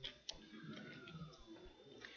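Near silence: faint room tone of a presentation room, with a couple of light clicks near the start.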